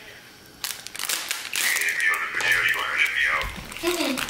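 A plastic zip-top bag crinkles as it is handled. Then a dog whines in a high, wavering tone for about two seconds.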